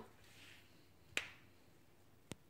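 A single sharp click about a second in from hands pressing glue-coated coffee-filter fringe around a poppy's centre, with faint soft handling noise before it.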